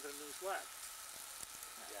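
Bacon and scallops sizzling on a grill grate over a campfire: a faint steady hiss with small crackling ticks, with a brief voice about half a second in.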